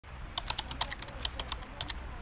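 A run of quick, light, irregular clicks, about eight a second, like keys or fingernails on hard plastic.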